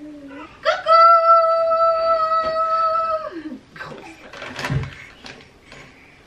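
A voice holding one long high note for about two and a half seconds, sliding down at the end, followed by a short rustle or thump.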